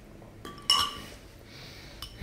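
A metal spoon clinking against a ceramic bowl: a light tap, then one clearer clink about two-thirds of a second in that rings briefly.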